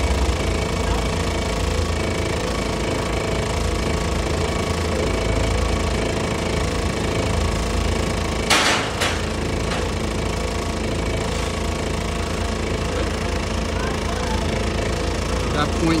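Forklift engine idling steadily, with two short sharp knocks about halfway through.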